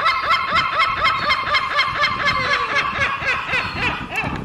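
A flock of crested terns calling together: a dense chatter of quick, repeated notes, several a second, overlapping one another.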